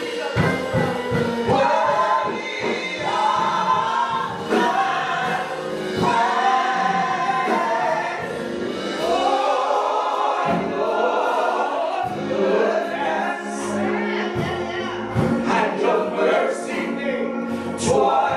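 Gospel singing by three amplified voices, two women and a man, in harmony over musical accompaniment, with long held, swelling notes.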